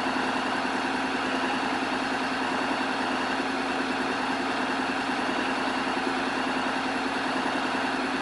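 Honda X-ADV's 745 cc parallel-twin engine idling steadily.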